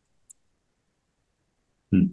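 Near silence broken by one faint, short click about a third of a second in. A man's voice starts just before the end.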